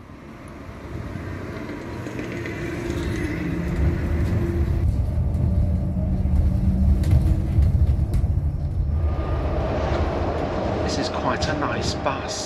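Inside a Yutong electric bus on the move: a low rumble of road and tyre noise that grows louder over the first few seconds, with a few faint steady tones and scattered clicks and rattles.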